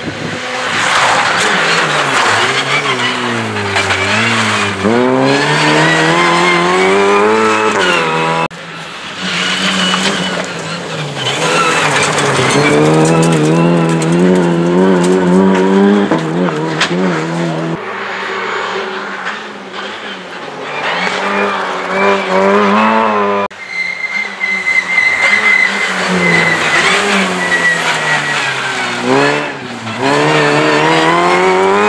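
Rally car engines accelerating hard and changing gear as the cars pass, the pitch climbing through each gear and dropping at every shift and lift-off. The sound changes abruptly three times as one car's pass gives way to the next.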